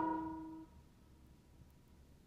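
The last held chord of a gospel organ, piano and bass arrangement dies away within the first second, then near silence.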